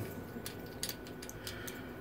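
Faint, irregular small metallic clicks as a three-piece safety razor's handle is slowly screwed onto its head.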